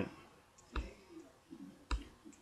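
Two computer mouse clicks about a second apart, pausing a video playing in a web browser.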